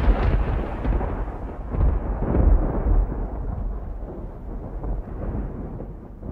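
A deep rumble with no clear pitch. It swells in the first three seconds, then slowly fades.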